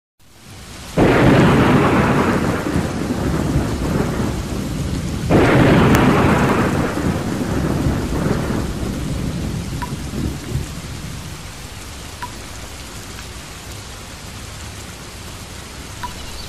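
Thunderstorm: two loud thunderclaps, about a second in and about five seconds in, each rumbling away over several seconds, over steady rain that fades lower toward the end.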